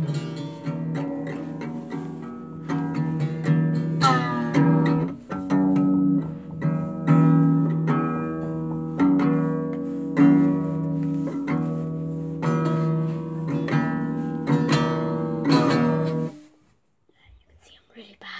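Small acoustic guitar strummed over and over, each strum ringing into the next, with the instrument badly out of tune. The strumming stops about sixteen seconds in.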